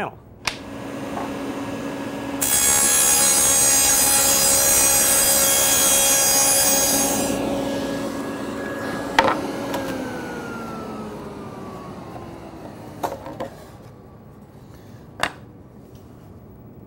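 Table saw with a dado blade stack switched on with a click and running up to speed, then cutting a rabbet along the edge of a plywood panel for about five seconds. It is switched off with a click, and the blade hums down in a falling pitch. A few light knocks come near the end.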